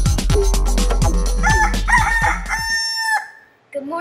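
Intro music with a regular drum beat, then a rooster's cock-a-doodle-doo crow from about a second and a half in, one long held call that stops about three seconds in as the music ends.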